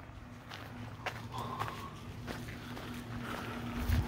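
Hiking footsteps crunching on a gravel path, faint and irregular, over a faint steady low hum.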